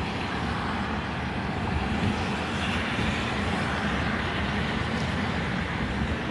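Steady road noise of a car driving, heard from inside the car: a low rumble with an even hiss from the tyres on wet pavement.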